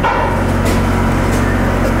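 Steady low drone of a machine running without a break.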